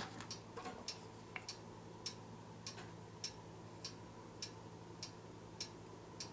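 Faint, even ticking, a sharp tick roughly every 0.6 seconds, like a clock, over a faint steady room hum.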